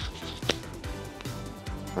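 Quiet background music, with one sharp click about half a second in as the clip of a Rode Wireless Go II transmitter is fastened onto a hoodie.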